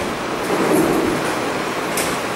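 Steady, fairly loud hiss-like background noise, with a faint low murmur about half a second in.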